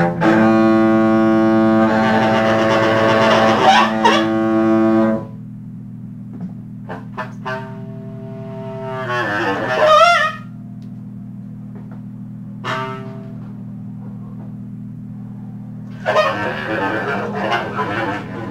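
Free-improvised jazz on bowed double bass. A loud note is held for about five seconds, then the playing drops to a quieter low drone with short high notes and a wavering glide near the middle, and loud playing returns near the end.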